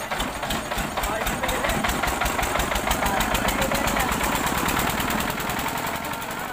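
Small stationary diesel engine on a cart running with an even, rapid knock that quickens over the first few seconds.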